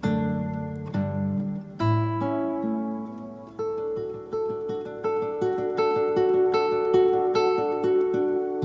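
Instrumental music: an acoustic guitar picking single notes that ring and fade, with no singing. From about halfway through, it settles into a steady, evenly picked pattern.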